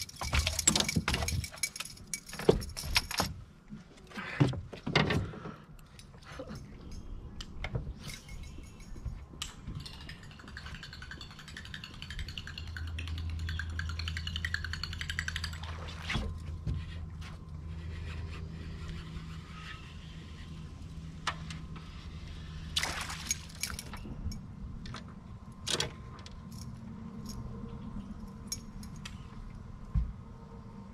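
Clicks and rattles of rod, reel and tackle on an aluminum boat, dense in the first few seconds, with a steady low hum from an electric bow-mounted trolling motor running from about twelve seconds to twenty-three seconds in.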